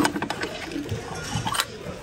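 Ceramic and glass pieces clinking and knocking together as they are handled in a bin, with a sharp click right at the start and another at about one and a half seconds.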